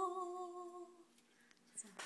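A young woman's voice humming a final held note unaccompanied, steady in pitch and fading out about a second in. A short faint vocal syllable comes near the end.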